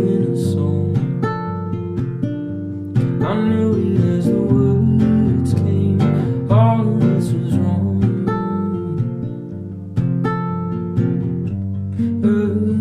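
Nylon-string acoustic guitar played slowly in an instrumental passage, its plucked chords ringing out. A fresh chord is struck about every three seconds.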